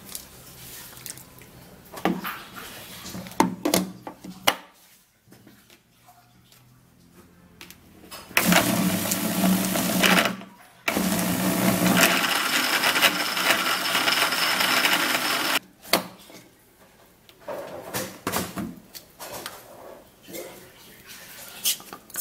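Small personal blender running in two goes, about two seconds and then, after a short break, about five seconds, chopping lemon pieces in a little water. Before and after, the plastic cup clicks and knocks as it is fitted onto and lifted off the motor base.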